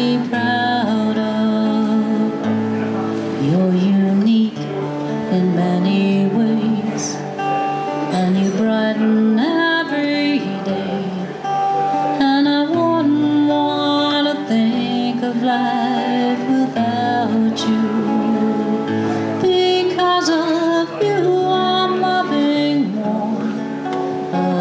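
A woman singing a song while accompanying herself on an acoustic guitar. Her voice holds long, wavering notes over the steady guitar.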